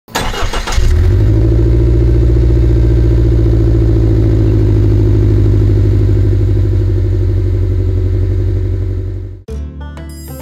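Subaru Forester Sport's turbocharged flat-four engine starting: a brief crank in the first second, then it catches and idles steadily and loudly. The sound cuts off suddenly about a second before the end.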